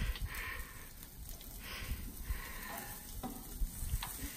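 Kebab skewers sizzling on a hot gas grill, a steady faint hiss.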